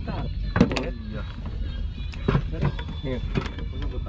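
Men's voices, indistinct, over a steady low hum with a thin steady high whine underneath.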